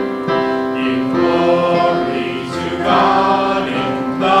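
Church choir and congregation singing a hymn together in long held notes.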